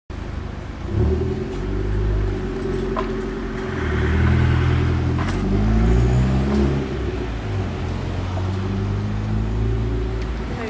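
A car engine running close by on the street, its note rising and falling as it drives past, over low traffic rumble.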